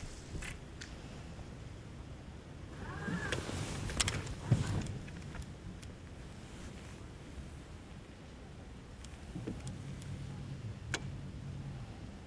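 Scattered small clicks and knocks on a bass boat's deck, the loudest a knock about four and a half seconds in. A low steady electric hum from the bow-mounted trolling motor starts about two and a half seconds before the end.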